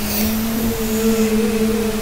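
A child's voice humming one long, steady note.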